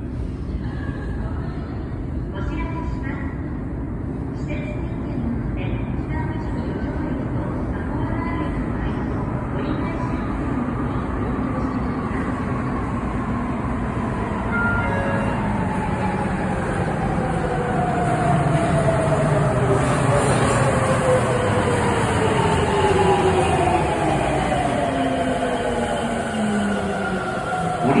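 Sapporo subway Namboku Line train (a rubber-tyred 5000 series) arriving at the platform, its rumble building as it approaches. Over the last ten seconds its motor whine glides down in pitch as it brakes to a stop.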